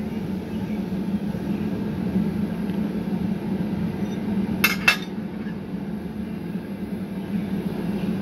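Steady drone of an electric shop fan running. About halfway through come two sharp metallic clinks close together, as steel glassblowing hand tools are set down and picked up on a steel workbench.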